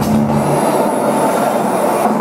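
Loud live electronic band music dominated by a dense, noisy, train-like wash of rumble and screech, over a held low note.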